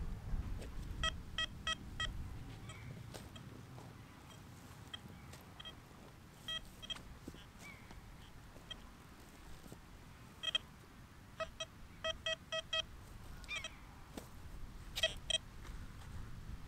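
Metal detector signal beeps, faint, all at one mid pitch, coming in short runs about a third of a second apart as the coil passes over a target, with a few faint bird chirps between.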